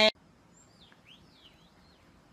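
A sung note cuts off right at the start, then near-quiet with a few faint, quick bird-like chirps about half a second to a second and a half in.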